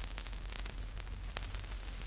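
Surface noise of a shellac 78 rpm record playing on after the music has ended: steady hiss with scattered crackles and clicks from the stylus in the groove, over a low steady hum.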